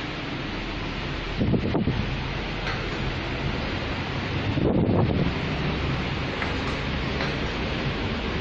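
Steady rushing noise with a low hum, typical of wind or handling noise on a camera microphone, with two louder low gusts, one about a second and a half in and one near the middle.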